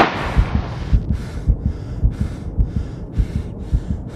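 Music cuts off with a loud hit, leaving a fast heartbeat sound effect of regular paired low thumps under quick, heavy panting breaths.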